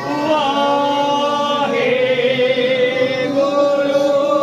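Several voices chanting together in slow, long held notes.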